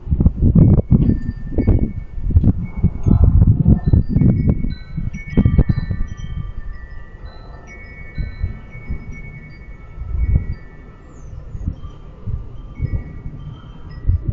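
Chimes ringing, many clear tones overlapping, each hanging on and fading, over a low, gusty rumble that is strongest in the first half.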